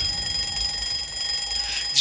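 A steady, high-pitched alarm-clock ring used as a sound effect in the song's backing track, holding one unchanging tone for about two seconds in a break in the singing.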